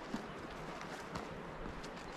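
Footsteps on stone paving and steps, a few separate knocks over a soft outdoor background.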